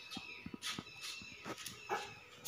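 Soft, irregular pats and rustles of a small child's hands working over a man's head and hair in a champi head massage.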